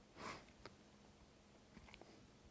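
Near silence broken by one short sniff through a man's nose about a quarter second in, followed by a faint click, over a faint steady hum.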